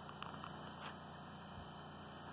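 Faint, steady outdoor background noise with a couple of soft ticks.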